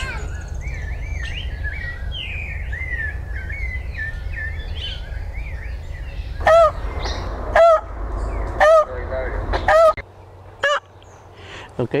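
Quick, high chirping calls, then a keeper's call to the crocodiles: four loud honking shouts about a second apart.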